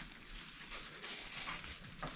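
Faint eating sounds: pizza being chewed and a paper napkin dabbed at the mouth, with a few soft small ticks in the second half.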